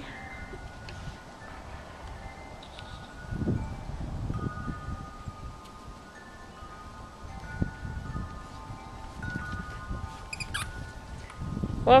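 Wind chimes ringing, single tones at several different pitches sounding at irregular moments and hanging on, over a low rumble that swells twice.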